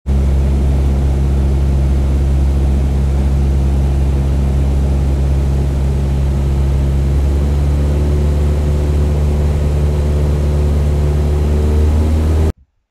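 Propeller aircraft engine running steadily with a low hum, its higher tones rising slightly in pitch in the second half.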